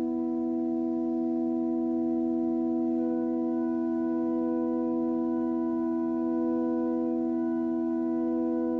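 Background music: a held chord of steady, pure tones, with a few fainter higher notes joining about three seconds in.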